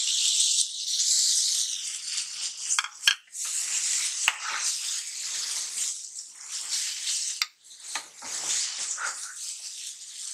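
Chopped tomatoes dropped into hot oil and masala in a nonstick pan, sizzling loudly at first, then a silicone spatula stirring them through the sizzling mixture, with a few sharp clicks against the pan.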